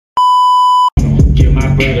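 A single steady test-tone beep, the kind played over TV colour bars, lasting under a second. It cuts off, and hip hop music with rapping starts loudly about a second in.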